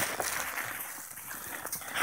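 Faint crunching and rustling of boots moving in snow among brush, with light irregular crackles over a low outdoor hiss.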